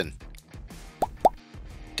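Two short rising blip sound effects, about a second in and a quarter second apart, over faint background music.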